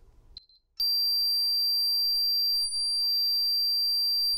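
A short beep, then, about a second in, the Qolsys IQ Panel 2 Plus alarm starts: a steady, unbroken high-pitched siren tone. A perimeter door/window sensor faulted during the arming countdown has set it off.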